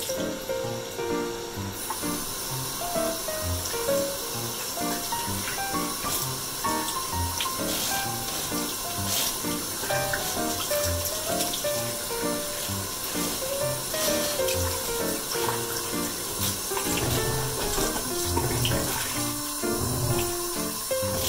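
Background music with a light stepping melody over water running from a washbasin's pull-out shower sprayer, splashing on a wet kitten in the basin.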